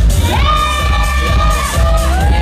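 Hip-hop dance track with a heavy bass beat playing loudly, joined from about half a second in by long, high-pitched shouts and cheers from a crowd of children.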